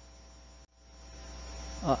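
Steady low electrical mains hum in the recording. It cuts out completely for a moment a little over half a second in, then returns and grows gradually louder, with a man's 'uh' starting right at the end.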